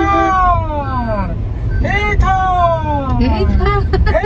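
A small child's high voice in long, falling wails, three of them about two seconds apart, over the low rumble of the car's engine and road noise inside the cabin.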